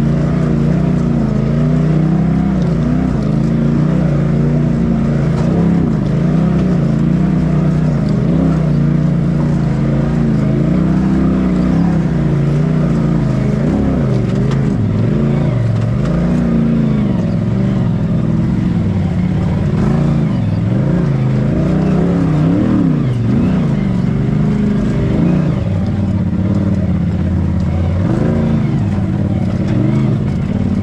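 Polaris RZR side-by-side engine running at low speed over rocks, its pitch rising and falling with repeated short throttle blips.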